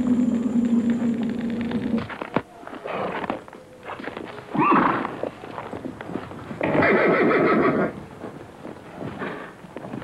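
Background music fades out about two seconds in, then a horse whinnies twice: a short high cry about halfway through and a longer, louder one a couple of seconds later.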